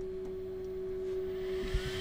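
Bambu Lab X1C 3D printer starting a print: a steady, pure, hum-like tone, with a faint higher tone gliding up and back down and a hiss building in the second half.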